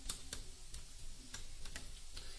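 A few faint, irregular clicks of test probe tips touching the contacts of an LED TV backlight strip during a backlight test, over a low steady hum.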